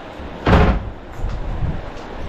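A single loud thud about half a second in, followed by a second or so of softer low bumping.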